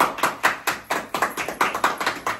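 A small group of people clapping together, quick overlapping claps at about five a second.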